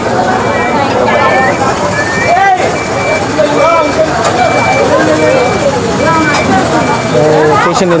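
A vehicle's warning beeper sounding a short high beep over and over, about every half second, over a din of several men's voices and running engines while the crane holds the idol on the truck.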